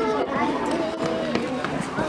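Indistinct voices of several people talking, no words clear, with a few faint short ticks.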